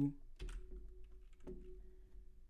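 A few separate clicks of a computer keyboard as the user works in the software.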